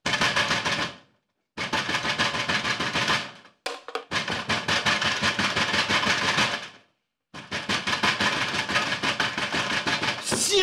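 Electric bell ringing in four long rattling bursts with short breaks between them, a rapid drum-roll-like clatter: someone is ringing to be let in.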